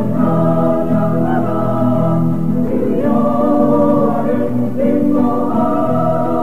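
Teenage choir singing a gospel praise song in held, multi-part chords that change every second or two.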